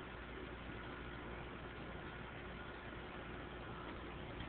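Steady hiss with a low hum and faint thin steady tones: the background noise of an old videotape recording.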